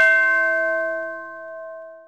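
A single bell-like chime, struck once, ringing with several tones at once and slowly fading away: the closing note of a theme jingle.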